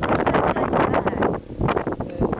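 Wind buffeting the camera microphone in uneven gusts.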